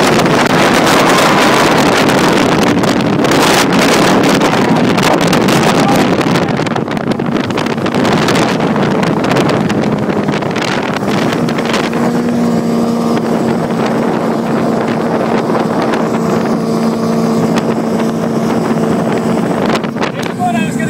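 Speedboats running at high speed: engine noise mixed with rushing water and heavy wind on the microphone. About halfway through the wind noise eases and a steady engine drone comes through.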